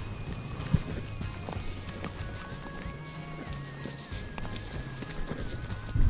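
Footsteps and rustling through tall dry grass, a rough, uneven shuffle with a sharp knock about three-quarters of a second in, while faint held tones sound underneath.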